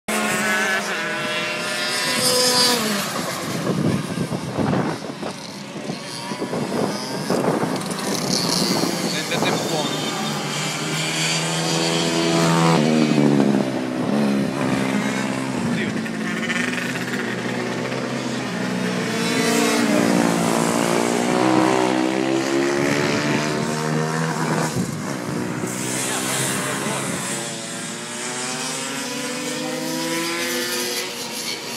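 KF2 kart's 125 cc two-stroke engine running hard around the circuit. Its pitch climbs and drops again and again, and it grows louder and fades as the kart comes past and moves away.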